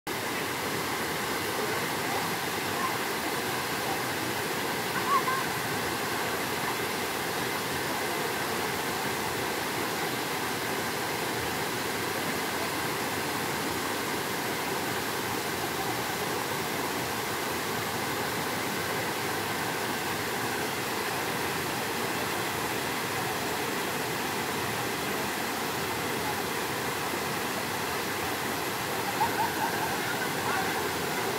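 Small waterfall spilling into a shallow rock pool: a steady, even rush of falling water. A short louder sound stands out about five seconds in and again near the end.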